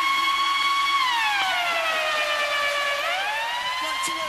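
A siren sound: a steady pitched wail held for about a second, then sliding down by nearly an octave over about two seconds and climbing back up near the end.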